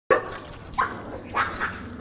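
A leashed dog barking at another dog, a few short barks: the reactive outburst of a dog on a leash meeting another dog.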